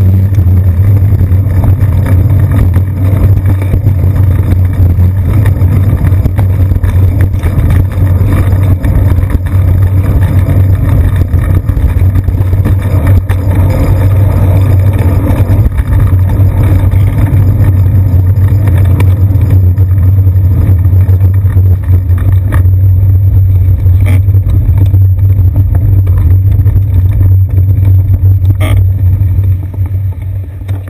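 Loud, steady low rumble of road vibration and riding noise picked up by a seat-post-mounted action camera on a moving bicycle, with city street traffic mixed underneath; it eases off near the end as the bike slows.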